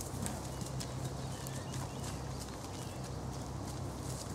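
Highland cattle grazing close by: a run of short, crisp tearing sounds as they crop the grass, with a few faint bird chirps in the middle over a steady low hum.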